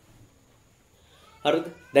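Near silence for over a second, then a man's voice starts speaking about one and a half seconds in.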